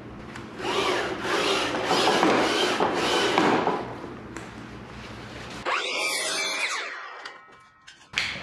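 Sliding compound miter saw cutting through a 1x12 board for about three seconds, trimming off the rough factory edge. A second, shorter burst of saw noise follows about six seconds in.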